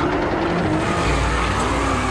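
Car engine held at high revs with tyres spinning, a loud, steady mix of wavering engine note and tyre noise; a deeper rumble joins about a second in.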